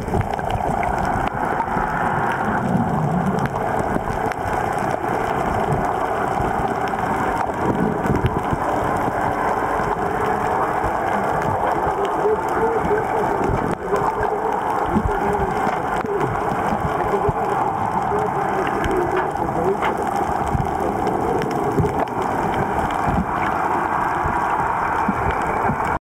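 Steady muffled underwater noise picked up by a camera held in the sea, with water gurgling against it.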